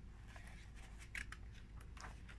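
Faint rustle of a glossy paper book page being lifted and turned by hand, with a few soft crackles in the second half.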